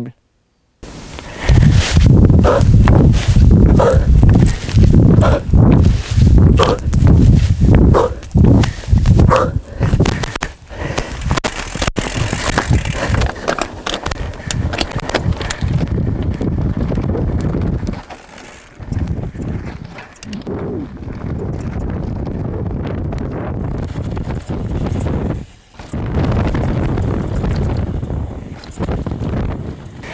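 Mountain biker's hard, rhythmic breathing during an all-out sprint and fast descent, in a quick run of strong pulses over the first ten seconds. After that comes a steady rushing noise of riding at speed.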